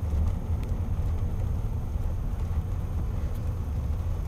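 Car driving, heard from inside the cabin: a steady low rumble of engine and road noise that steps up in level right at the start.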